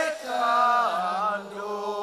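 A single voice singing a Javanese chant-like melody in long held notes, sliding down to a lower held note about a second in.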